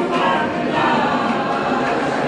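Several voices singing together in a choral song, with held notes.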